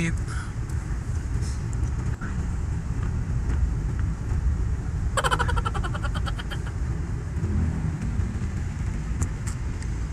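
Car cabin road noise from a passenger seat: a steady low rumble of engine and tyres. About five seconds in, a short pitched sound pulses rapidly for a second or so.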